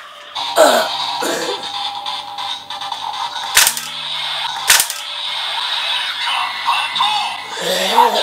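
Electronic standby music from a Kamen Rider Saber DX Seiken Swordriver toy belt, with a short voice near the start. Two sharp plastic clicks come about a second apart near the middle.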